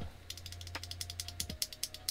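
A loose Redragon red mechanical keyboard switch worked rapidly between the fingers: a fast run of small clicks with a faint ringing spring ping. The ping is still there, though less than on most such switches.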